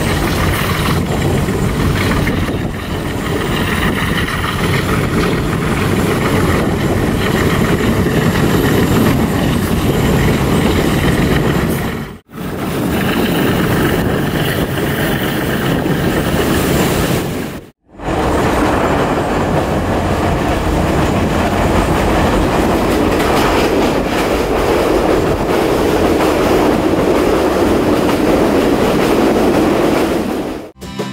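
Passenger train running on the rails, heard from aboard its Chinese-built carriages: a loud, steady running noise. It drops out briefly twice, about twelve and eighteen seconds in.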